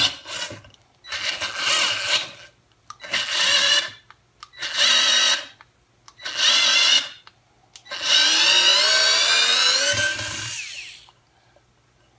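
WORX WX240 4V cordless screwdriver running in reverse to back a long wood screw out of a board. There are five short bursts of motor and gear whine, then one longer run of about three seconds whose pitch rises before it fades out.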